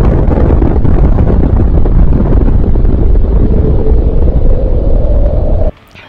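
Nuclear-explosion sound effect: a sudden, very loud, deep rumble that holds steady for over five seconds and cuts off abruptly near the end.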